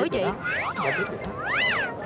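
Two high-pitched, meow-like squeals, each gliding up and then down in pitch, one about halfway in and one near the end.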